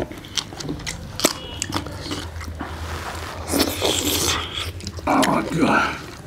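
Close-miked eating sounds of people eating rice and curry by hand: chewing and wet lip smacks with sharp mouth clicks. Two short voice-like mouth noises come about three and a half and five seconds in.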